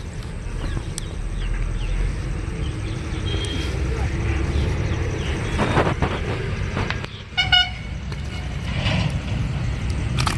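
A vehicle horn gives one short toot about seven and a half seconds in, over a steady low rumble.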